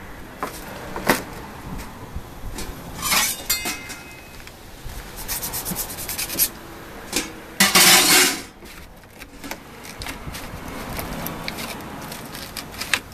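A foil-wrapped baked potato being cut and opened in a paper food tray on a stainless steel counter: aluminium foil crinkling and paper rustling, with scattered clinks of metal. The loudest rustle comes about eight seconds in.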